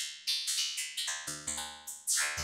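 Synthesizer sound chopped by a step-sequenced trance gate into a fast run of short, decaying pitched pulses, about six or seven a second. A low bass note comes in about halfway through.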